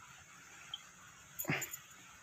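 A single short, faint animal call about one and a half seconds in, rising slightly in pitch, with a few soft clicks around it.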